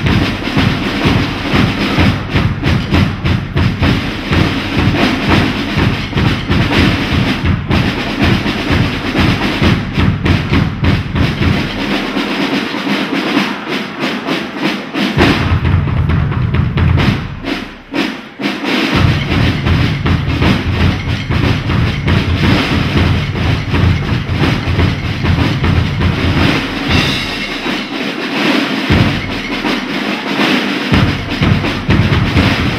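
Fast stick percussion music: a dense run of rapid drumstick hits over a steady bass-drum beat. The bass drum drops out twice, from about 12 to 15 seconds in and again near the end, while the stick clatter carries on.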